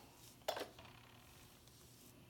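A single light clink about half a second in, like a small hard object knocking or being set down, over faint room tone.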